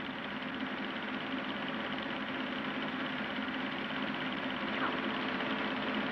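A film projector running: a steady mechanical whirr with a fast, even flutter and a constant low hum.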